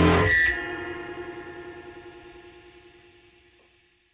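Closing music ends on a final electric guitar chord played through effects, which rings out and fades away to silence over about three seconds.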